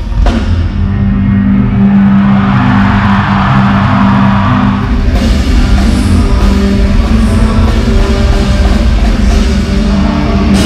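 Live rock band playing loud in an arena: drum kit, electric guitar and bass. Cymbals come in strongly about halfway through.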